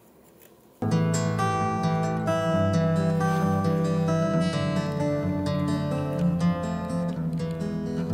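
Acoustic guitar music starts abruptly about a second in, after near silence: a picked, strummed guitar intro with many sustained notes that leads into a sung song.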